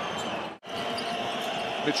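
Basketball arena sound: steady crowd noise with a ball bouncing on the court. It drops out abruptly for an instant about half a second in, then comes straight back.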